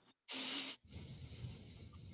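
A short breathy exhale through the nose, about half a second long, followed by faint rustling of trading cards being handled.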